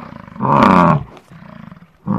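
Bison grunting: one loud, rough roaring call about half a second in, followed by a quieter, lower one.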